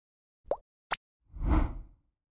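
Intro sound effects for an animated title card: two short pops a little under half a second apart, the first with a quick upward sweep, followed by a brief whoosh with a low rumble.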